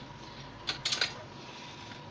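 A metal spoon clinking lightly against glass a few times, about three quarters of a second to a second in, while ginger paste is spooned from a jar onto raw chicken drumsticks in a glass dish.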